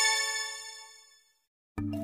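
A bright, bell-like metallic chime rings out and dies away over about a second. Music with short mallet-like notes starts near the end.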